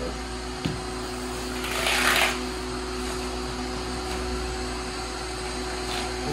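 Steady hum of a running machine in a small room, with a short scraping rasp about two seconds in as electric floor-heating cable is worked in the plastic studs of a Schluter heating membrane.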